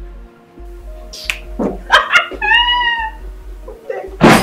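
Soft background music score of held tones, with a short, high, arching cry about two and a half seconds in.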